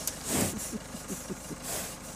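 A horse breathing and sniffing right onto the phone's microphone, its nostrils against the lens: a loud whoosh of air about half a second in and another near the end.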